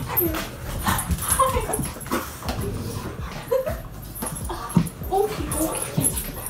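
Pet dogs whining in many short whimpers that rise and fall in pitch, mixed with brief knocks and scuffles, as they excitedly greet their owner and jump up on her.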